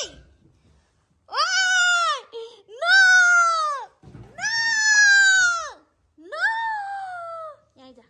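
Young pet macaque screaming: four long, high calls about a second apart, each rising and then falling in pitch, the last one fainter.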